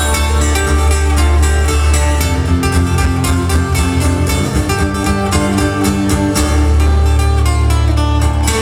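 Live band playing an instrumental passage, guitars over a heavy, sustained bass and a steady beat.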